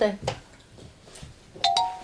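A short, bright two-note chime sound effect, the second note higher, about one and a half seconds in, like a doorbell ding.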